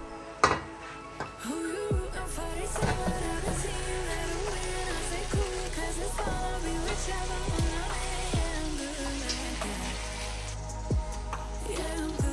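Background music: a melodic lead line over a steady backing, with deep bass-drum hits that drop in pitch every second or two.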